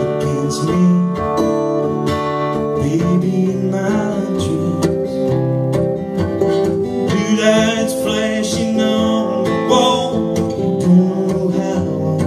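Acoustic guitar strummed steadily in a country-folk song, with a man's voice singing in places.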